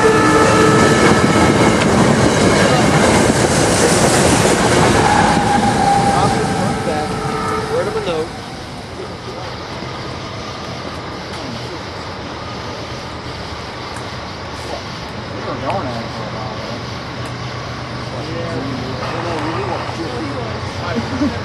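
SEPTA Silverliner IV electric multiple-unit train passing close at speed. The end of its horn is heard about a second in, and the rush of the cars and their wheels on the rails dies away about eight seconds in.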